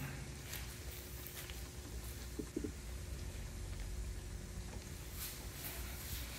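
Akara (black-eyed bean fritters) deep-frying in hot oil: a faint steady sizzle with scattered small crackles, over a steady low hum.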